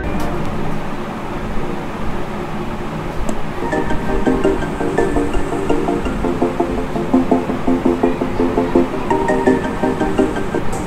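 Music streamed from a phone over Bluetooth, playing through the small speaker built into a cardboard robot dustbin. A melody with a steady pulse comes in about three and a half seconds in.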